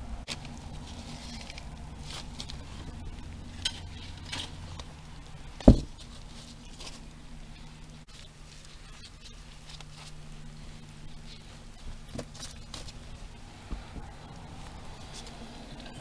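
Paper sheets being laid and handled over worm-bin bedding, with light rustling and scattered small ticks, and one sharp knock about six seconds in. A faint steady low hum runs underneath.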